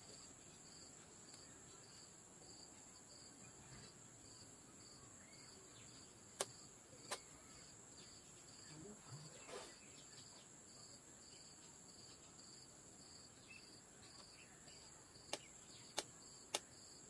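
Faint insect chirping: a steady high buzz with a regular chirp about twice a second. A few sharp clicks come about six and seven seconds in and again near the end.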